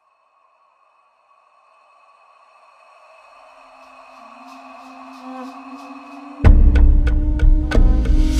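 Dance soundtrack music: after a moment of silence, sustained held tones slowly swell louder, then a heavy bass-driven beat drops in suddenly about six and a half seconds in.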